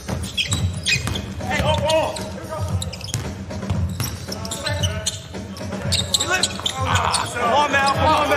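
A basketball bouncing on a hardwood court during live play, with players' voices calling out on the floor.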